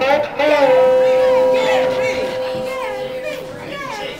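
Voices talking and calling out in a busy club, with one long held tone lasting about three seconds starting about half a second in.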